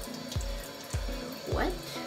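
Tap water running into a sink and splashed onto the face by hand, under background music with a steady beat about twice a second.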